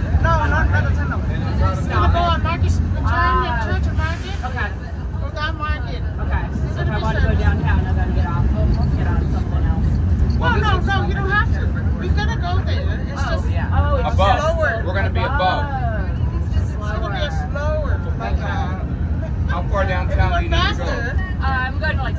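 1934 Blackpool open-top boat tram running along the track, a steady low rumble, with passengers chattering throughout.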